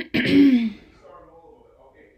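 A woman clearing her throat: a loud, harsh rasp in the first second that ends in a short voiced tone falling in pitch.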